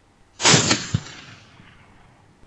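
A single rifle shot, the shot that drops a fox, sounding suddenly and dying away over about a second. A short sharp knock follows about half a second after it.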